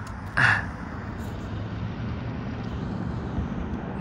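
Steady low outdoor background rumble, like traffic or a vehicle running, with a short louder burst about half a second in.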